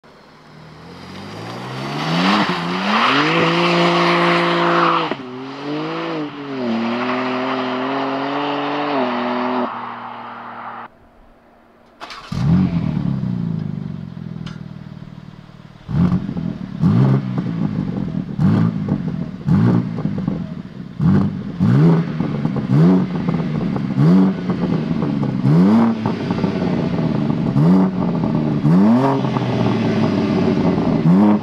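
BMW M3 G81 Touring's twin-turbo straight-six accelerating hard past, its pitch climbing with an upshift about five seconds in, then fading away. After a short gap the engine starts with a loud flare that settles toward idle. From about halfway it is revved in quick blips roughly once a second through the quad exhaust.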